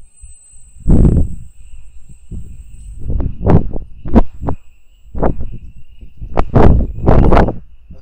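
Wind gusts buffeting the microphone: loud, irregular rumbling blasts, strongest about a second in and again in the second half, over a faint steady high whine.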